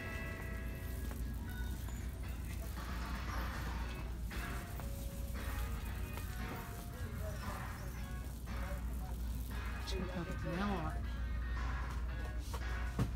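Store background music playing over the ceiling speakers, with voices and a steady low hum underneath.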